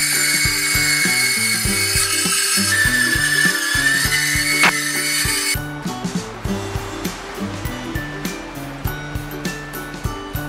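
Handheld circular saw running and cutting through three-quarter-inch plywood. Its whine drops in pitch under load a few seconds in and climbs back, then the saw stops about five and a half seconds in. Upbeat background music plays throughout.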